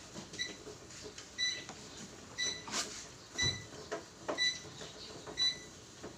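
Electric treadmill's console beeping: six short high beeps about a second apart, with a few knocks between them.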